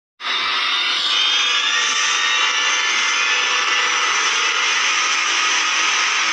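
Steady rushing, jet-like noise of an intro-animation sound effect, starting abruptly just after the start and holding without a break.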